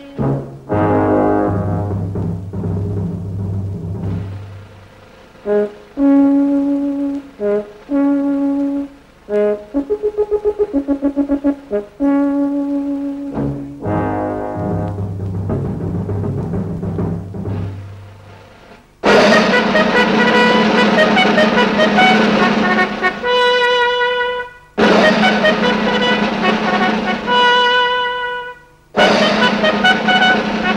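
Orchestral film music led by brass: separate brass phrases at first, then from about 19 seconds in, louder sustained full-orchestra chords with short breaks.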